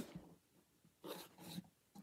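Near silence: room tone, with a faint short sound about a second in.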